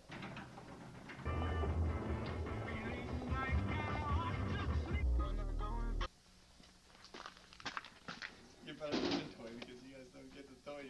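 Distorted home-video tape soundtrack: voices and pitched tones over a heavy low rumble, which cuts off abruptly about six seconds in. After the cut come fainter, broken-up voice sounds.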